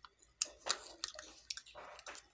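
A person chewing a mouthful of half-cooked rice-field eel with the mouth closed: irregular small wet clicks, a few sharper ones among them.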